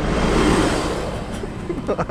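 A minibus driving past at close range: engine rumble and tyre noise, loudest in the first second and then fading as it moves away. A short laugh comes at the very end.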